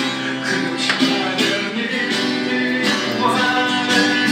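A street musician's strummed guitar music, amplified through a loudspeaker.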